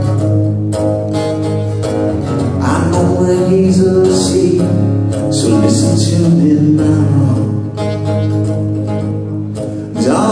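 Live acoustic guitar strummed in a steady rhythm, with a male voice singing in places.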